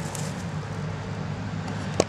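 Steady low hum of nearby factory machinery under a constant wash of background noise.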